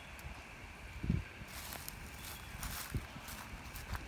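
Faint footsteps of a person walking on dry grass and dirt, a few soft thumps with light rustling, over a steady faint high hiss.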